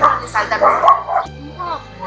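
A woman's raised, agitated voice over background music with a steady bass line; the voice is loudest in the first second or so.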